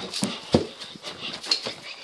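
Footsteps going up stairs: a quick, uneven run of thuds, one louder about half a second in.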